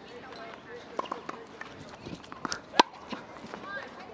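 Tennis ball struck by racquets and bouncing on a hard court: a few sharp pops, the two loudest close together past the middle.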